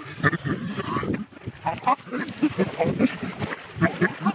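A person making short, broken non-word vocal sounds, a string of gasps and grunts.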